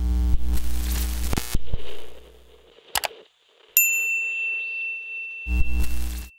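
Electronic logo sting with glitch effects: a deep bass hit under crackling static, a couple of sharp clicks about three seconds in, then a bright ringing ding that holds, and another bass hit near the end.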